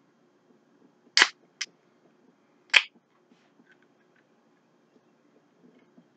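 Pull tab of an aluminium energy-drink can being cracked open: three short, sharp snaps with a brief hiss, about a second, a second and a half and nearly three seconds in, the last the loudest.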